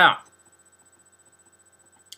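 Faint steady electrical hum, a few constant tones held without change, after a single spoken word at the start.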